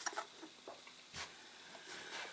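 Faint handling noise: a few soft clicks and taps, with one slightly louder knock a little over a second in.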